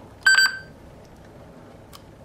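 A single short electronic beep from a TTS Big Point recordable talking button as the record button is released, signalling that recording has stopped.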